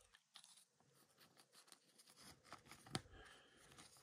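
Near silence with faint crinkling and small ticks of a trading card being handled and slid into a clear plastic sleeve, with one slightly sharper click about three seconds in.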